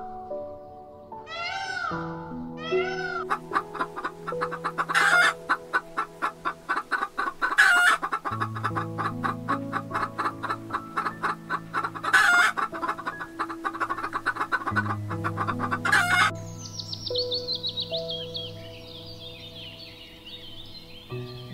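A flock of chickens clucking rapidly over soft background music, with four louder, sharper calls among the clucks; the clucking stops abruptly a few seconds before the end.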